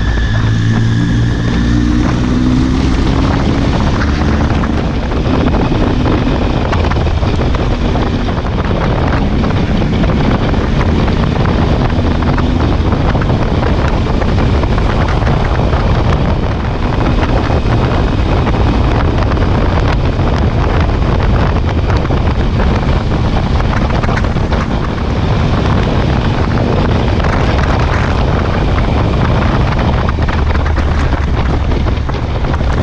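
Triumph Speed Triple's three-cylinder engine running at highway speed, largely buried under loud, steady wind rush on the bike-mounted camera's microphone. The engine note wavers in pitch in the first few seconds, then holds steady.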